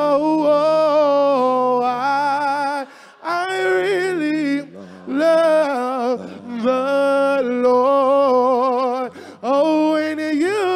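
A man singing a gospel solo into a microphone, holding long wordless notes and bending them in melismatic runs, with short breaks between phrases.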